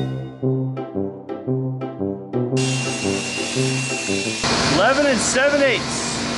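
Background music with a repeating plucked beat; about two and a half seconds in, a table saw starts cutting plywood, with a steady high whine over its running noise. The music and the whine stop near the end, and the saw's noise goes on.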